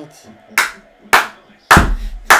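A man's hands slapping three times, about half a second apart, the third one heavier with a low thud.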